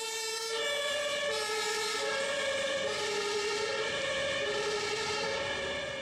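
Two-tone emergency-vehicle siren, stepping back and forth between a low and a high note about once a second.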